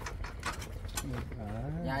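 A long, low drawn-out call lasting about a second and a half, rising and then falling in pitch, over a steady low rumble.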